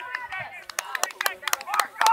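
Spectators clapping in quick sharp claps from about a third of the way in, over faint voices.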